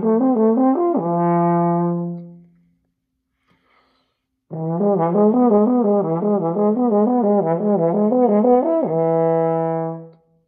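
French horn playing a flexibility warm-up exercise at an easy dynamic. It plays a quick run of slurred notes between neighbouring overtones and ends on a long held low note. After a pause of about two seconds the whole pattern comes again.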